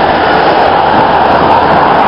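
Loud, steady rush of road noise from a moving bicycle: wind buffeting the handlebar or helmet camera's microphone, mixed with the sound of motor traffic passing close by.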